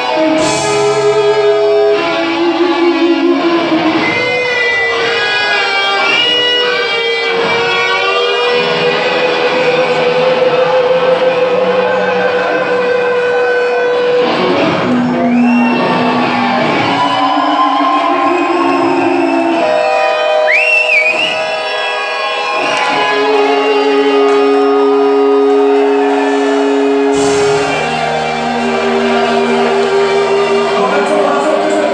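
Heavy metal band playing live in a large hall: electric guitar carrying long held notes with bends and vibrato over the full band.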